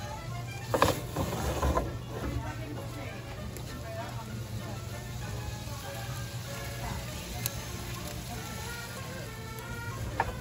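A cast-iron skillet knocks twice against the floor of a wood-fired brick oven in the first two seconds as it is slid in. A steady low hum follows, with faint voices in the background.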